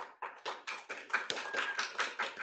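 A small audience applauding: a quick, irregular run of separate hand claps.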